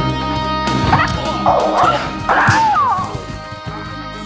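High-pitched shrieking fighting yells in the Bruce Lee style, several in quick succession between about one and three seconds in, with sharp hit sounds, over film score music.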